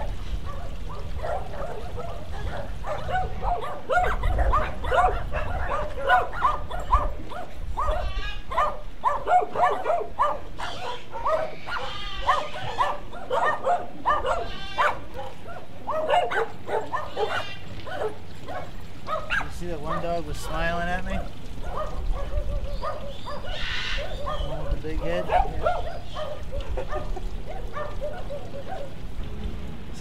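Dogs barking again and again in quick volleys, thickest in the first half and thinning out later, over a low steady rumble.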